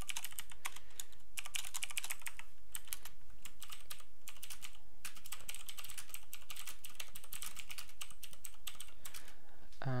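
Typing on a computer keyboard: quick runs of key clicks broken by short pauses, as a line of text is typed.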